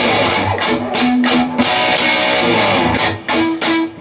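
Electric guitar playing a strummed rock rhythm part: a run of sharp chord strums, some left ringing between strokes.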